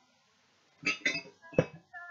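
A short silence, then brief muffled noises and one sharp knock about one and a half seconds in.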